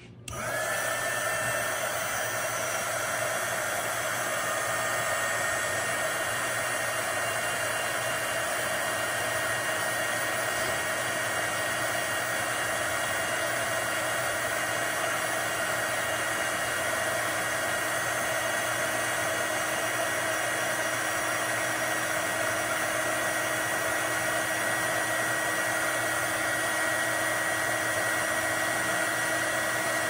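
SEEKONE 350 W mini heat gun switching on and then running steadily. Its fan makes a continuous rush of blowing air with a thin high whine.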